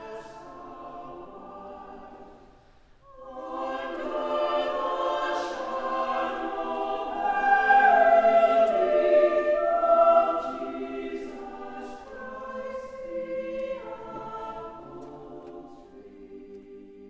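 Choral music: a choir singing slow, held chords. It breaks off briefly about three seconds in, then swells to its loudest in the middle and softens toward the end.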